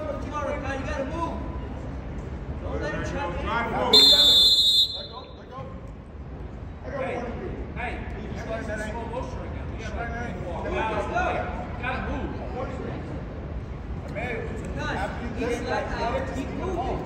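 A referee's whistle blown once, a shrill steady blast of just under a second about four seconds in, cutting off sharply. Shouting voices of coaches and spectators run through the rest.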